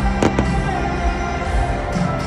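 Live band music played loud over a stadium sound system, with two sharp cracks close together about a quarter of a second in.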